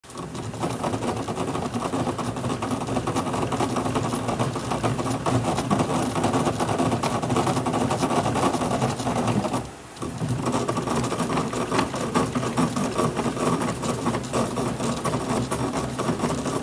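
The compression rollers of a bat rolling machine run over the barrel of a 2024 Easton Ghost Advanced double-barrel composite fastpitch bat, breaking the barrel in under heat and pressure. It is a steady rolling whir with fast rattling ticks, and it breaks off briefly about ten seconds in.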